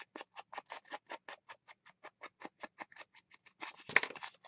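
Ink blending tool with a foam pad scrubbed rapidly against the edge of a paper piece, applying Distress Ink: a fast, even run of short rubbing strokes, about seven a second. A sharper knock comes near the end as the strokes stop.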